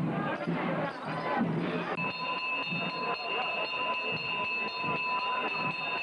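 Crowd voices in the street, and from about two seconds in a brass handbell ringing steadily with a high, sustained tone.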